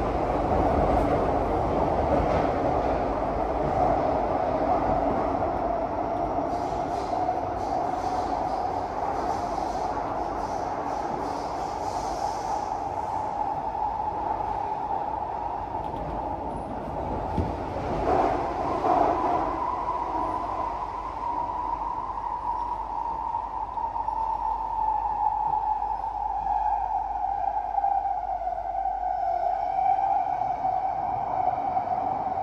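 Singapore MRT train heard from inside the car while running: a steady rumble of wheels on rail with a whining tone that climbs in pitch a little past the middle and eases back near the end. A brief clatter comes a little past the middle.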